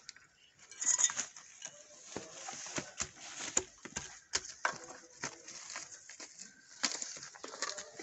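Hand scraping, pressing and crunching dry, stony garden soil while sowing seeds: an irregular run of small clicks, scrapes and gritty rustles.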